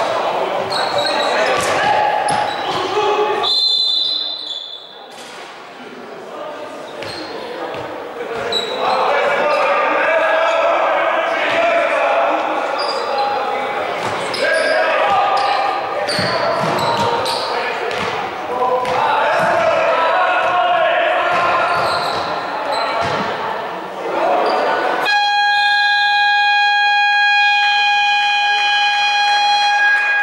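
A basketball bouncing on a hardwood gym floor under players' and spectators' voices, all echoing in a large hall, with a short high whistle about four seconds in. Near the end the scoreboard buzzer sounds one long, steady, even-pitched blast of about five seconds, stopping play.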